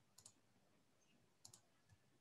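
Near silence with a few faint clicks of computer input as code is edited: a doubled click just after the start, another doubled click about one and a half seconds in, and a single light click near the end.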